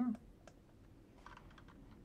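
Faint computer keyboard typing: a few scattered keystrokes, coming more often in the second half.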